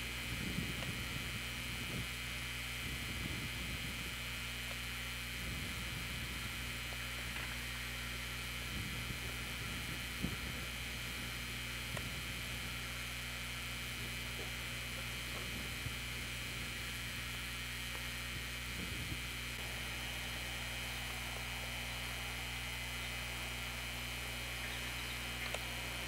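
A steady low hum with an even hiss, with a few faint ticks; no distinct event.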